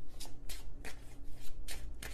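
A tarot deck being shuffled by hand: a quick run of soft card clicks and slaps, about five a second.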